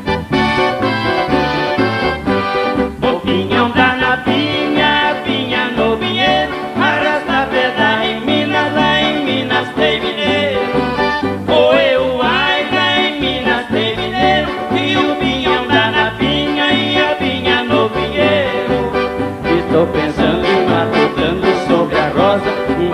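Live caipira music: a piano accordion plays the melody over acoustic guitar and a steady bass beat.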